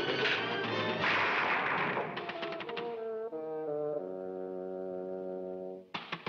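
Orchestral cartoon score: a busy, loud passage, then a run of short brass notes leading into a long held brass chord that cuts off just before the end.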